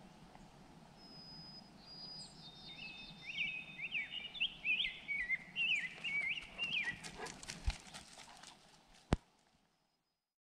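A small songbird singing a quick run of chirping notes that rise and fall in pitch over a faint outdoor background. This is followed by a few clicks, one of them sharp and loud, before the sound cuts off.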